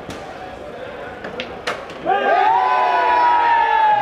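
A sinuca shot: a sharp click as the cue tip strikes the cue ball, then a couple of knocks of balls meeting about a second and a half later. About two seconds in, a man in the crowd lets out a long held shout of cheering, the loudest sound here.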